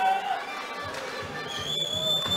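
Ice hockey referee's whistle: one steady, shrill blast of about a second, starting about one and a half seconds in, stopping play. Faint arena crowd noise underneath.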